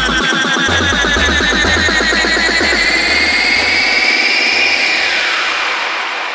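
Tech house build-up: a fast repeating synth pattern under a rising sweep. The bass line thins out and drops away about four seconds in.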